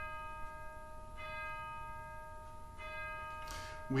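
A bell struck at an even pace, about every second and a half, the same note each time, each strike ringing on until the next. Strikes come about a second in and again near three seconds.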